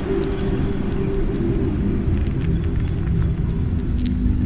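Ambient drone: a steady, low rumbling bed of sustained tones, unchanging throughout, with a faint hiss above it.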